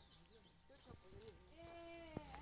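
Faint bleating: a wavering call about halfway in, then a drawn-out held bleat near the end.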